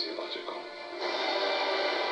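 Film trailer soundtrack music with many sustained notes, growing louder about a second in.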